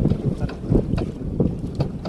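Wind buffeting the microphone over the noise of a small wooden boat on the water, with a few light irregular knocks.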